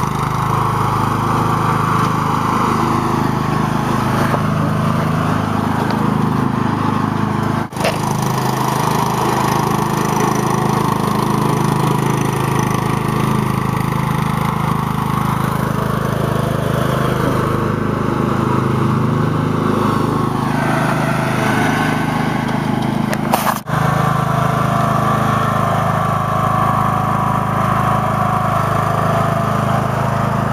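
Craftsman riding lawn tractor with a hydrostatic transmission, its engine running steadily as it is driven through snow and mud. The sound breaks off briefly twice, about 8 and 24 seconds in.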